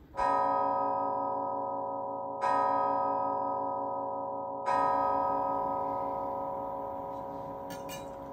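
A deep bell struck three times, about two and a quarter seconds apart. Each stroke rings with a slow pulsing hum and fades gradually, and the last is still ringing out at the end.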